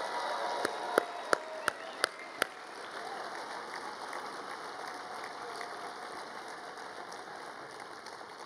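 A large banquet crowd applauding a man who has been asked up, with about six loud single claps close to the microphone in the first two and a half seconds. The applause slowly dies down.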